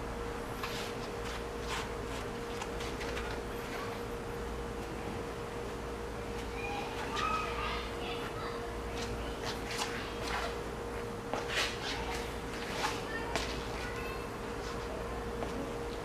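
Microfiber towel wiping freshly compounded car paint during an isopropyl-alcohol wipe-down, giving scattered light scuffs and rubs over a steady low hum.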